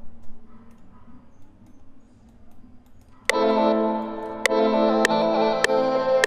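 Quiet for about three seconds, then playback of a chopped, re-pitched audio sample in a beat being made in FL Studio starts abruptly: a sustained chord with short clicks about every 0.6 s.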